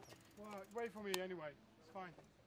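Road bike's rear freewheel hub buzzing faintly in short spells as the rider rolls off, the buzz sagging slightly in pitch as the wheel coasts between pedal strokes, with one sharp click about a second in.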